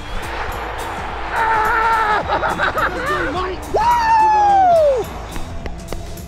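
A man yelling and laughing in excitement: two long shouts, the second and louder one falling in pitch near the end. Background music with a steady beat plays underneath.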